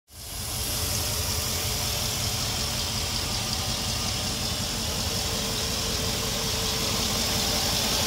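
Jeep Grand Cherokee WJ's 4.7-litre PowerTech High Output V8 idling steadily with the hood open, purring like a kitten.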